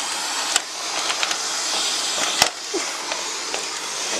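Robot vacuum cleaner running with a steady hiss of its motor and brushes. Two sharp knocks cut through it, one about half a second in and a louder one near the middle.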